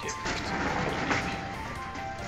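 Wooden sliding door rattling open along its track for about a second, over background music with long held tones.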